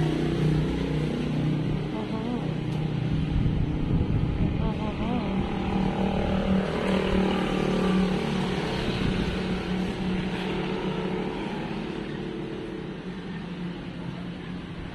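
A motor engine runs steadily as a low hum, swelling somewhat midway, with voices in the background.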